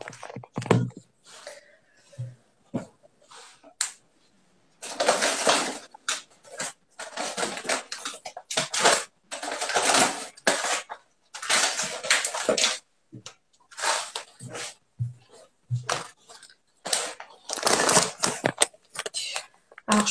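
Handling noise: a run of short rustling and scraping bursts with a few soft knocks, as things are rummaged through and picked up.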